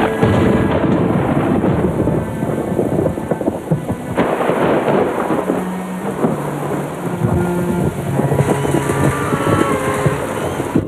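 Heavy rain pouring down in a thunderstorm, with a loud thunderclap at the start and another about four seconds in. Low string music is faintly held beneath it.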